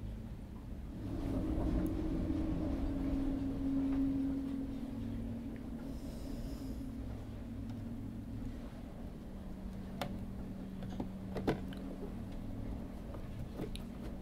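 A low steady hum, stronger for the first few seconds, with a few light clicks in the second half from a hand screwdriver driving a screw into a toothpick-plugged stripped hole in a brass ship's clock case.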